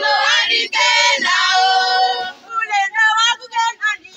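A group of girls and children singing together, holding long notes for the first two seconds or so, then breaking into shorter phrases.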